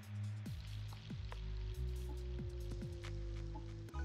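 Fireworks from an anime soundtrack: scattered pops and crackles with a few short falling whistles, over a steady low music drone.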